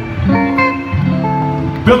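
Live electric guitar lead played through an amplifier: a line of single notes, each held a few tenths of a second. A man's voice cuts in right at the end.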